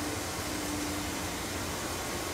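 Steady machinery noise of a working distillery still house around a column still: an even hiss with a faint steady hum beneath it.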